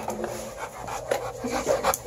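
Pit bull–type dog panting and sniffing right at the microphone, a handful of short, loud breaths that come thicker in the second half.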